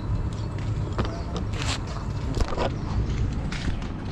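Steady low outdoor rumble, with several short rustles and knocks from the camera being handled and picked up.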